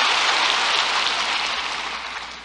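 Congregation applauding, a dense even clatter of many hands that dies away near the end.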